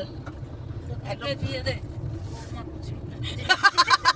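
Steady low rumble of a car's engine and road noise heard inside the moving cabin, under soft talk. Near the end a woman bursts into loud laughter.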